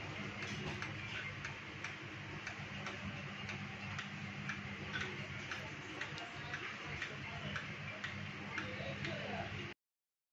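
Regular light ticking, about two ticks a second, over a steady low hum. The sound cuts out abruptly just before the end.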